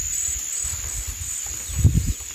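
An insect calling outdoors in a steady, high-pitched trill, over a low rumble, with a soft knock near the end.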